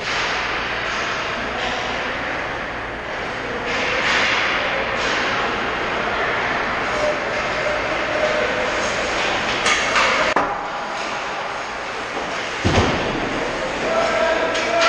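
Ice hockey rink din during play: a steady rushing noise with skates and sticks on the ice, and a couple of sharp knocks near the end.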